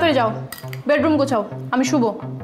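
Cutlery clinking against plates during a meal, with a few small sharp clinks.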